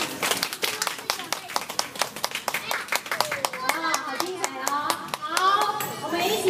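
Audience applauding: many hand claps, with voices talking over the clapping in the second half.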